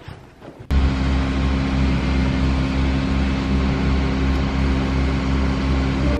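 A machine's steady low hum with a hiss over it, starting abruptly about a second in and holding level until it cuts off.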